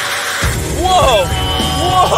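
Music and voices exclaiming 'whoa', over a steady low rumble that starts about half a second in, as the armoured SUV's smoke screen goes off.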